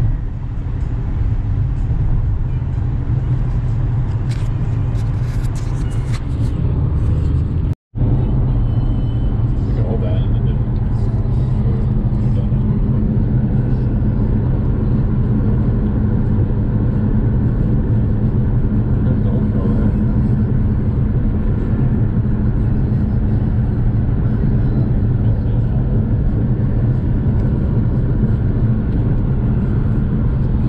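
Car cabin at highway speed: a steady low rumble of road and engine noise heard through the closed windows, broken by a brief dropout about eight seconds in.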